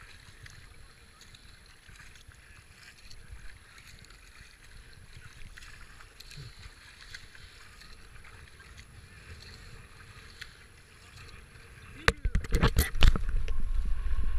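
Paddle strokes and water running along the hull of a racing kayak, quiet and even, with faint splashes. About twelve seconds in, loud buffeting and sharp knocks right at the microphone suddenly take over.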